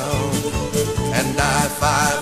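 Country band recording playing an instrumental passage between sung lines, over a steady beat.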